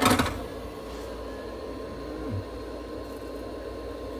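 A brief rustle in the first half-second, then a steady low electrical room hum with a faint constant tone over it.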